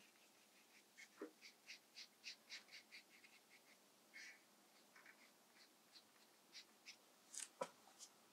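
Near silence, with faint short scratchy ticks of a round paintbrush working wet watercolour paint on textured watercolour paper. The ticks come about four a second for a couple of seconds, then a few scattered ones.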